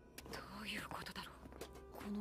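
Quiet Japanese dialogue from the anime episode, with soft music underneath.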